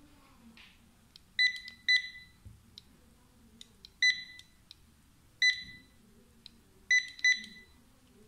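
SUNLUX XL-9309 wireless barcode scanner giving six short, high good-read beeps, each one marking a successful decode of a GS1 DataBar barcode on a test card. The beeps come at uneven intervals, two of them in quick pairs, with faint clicks in between.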